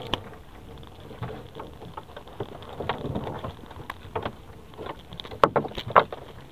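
Rustling and clicking of a wet monofilament fishing net being pulled and picked over by gloved hands in a boat, with scattered sharp knocks, the two loudest a little before the end.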